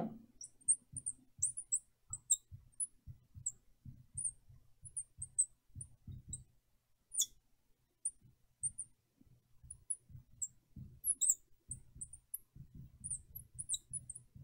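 Marker tip squeaking on a lightboard while an equation is written: many short, high squeaks, some sliding in pitch, over faint low rubbing and knocks of the pen on the board.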